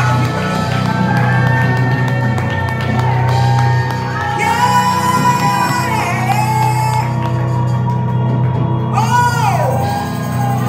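Gospel singing: a woman's amplified voice holding long notes and sliding between them over sustained chords from a Yamaha electric keyboard.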